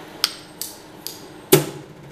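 Side cutters snipping 0.6 mm steel MIG welding wire at the torch nozzle: a sharp snip about a quarter second in, a lighter click a little later, and a louder snip about one and a half seconds in.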